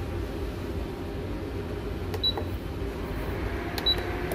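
An induction cooktop's touch controls beeping twice, short high beeps about one and a half seconds apart, as it is switched on and set, over a steady low hum.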